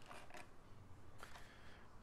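Near silence: faint room tone with a couple of soft handling knocks.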